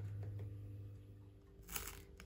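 A low electrical hum fades out in the first second and a half. Near the end a brief dry scrape follows: a knife drawn over crisp, freshly toasted bread.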